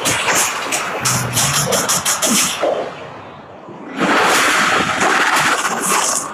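Movie trailer soundtrack: music layered with action sound effects and sharp hits. It drops into a brief lull about three seconds in, then slams back in loud a second later.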